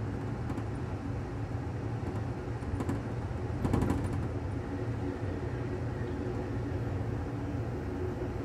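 Steady low rumble of an Amtrak California Zephyr passenger car rolling along the track, heard from inside at the rear window. A brief cluster of clicks about halfway through is the loudest moment.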